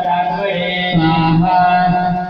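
Male voice chanting Hindu mantras in long, held notes that step between pitches, without a break.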